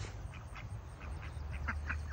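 Domestic ducks quacking faintly a few times, over a low steady hum.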